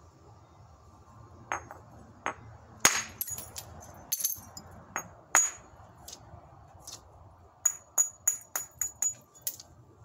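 Hard-hammer percussion flintknapping: a hammerstone striking the edge of a stone nodule, each blow a sharp clack with a short glassy ring. Scattered strikes come through the first half, the loudest about three seconds in, then a quick run of about seven lighter strikes, roughly three a second, near the end.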